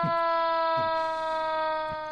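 A long, steady siren-like tone, drifting slightly down in pitch, with short bits of voice over it.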